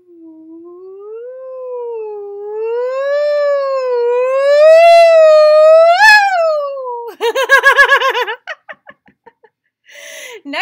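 A woman's voice singing one long sliding "ooh" that wavers gently up and down while climbing for about six seconds to a high peak, then dips and breaks into a quick run of short bouncing notes near the end: a vocal glide tracing the looping line drawn on a card.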